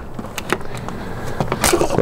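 A few light clicks from handling the cover of a travel trailer's 30-amp shore-power inlet, over a steady outdoor hiss.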